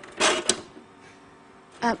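Metal prototype weather-forecast toaster being worked by hand: a short mechanical clatter ending in a sharp click about half a second in, then a faint hum. A few spoken words come in near the end.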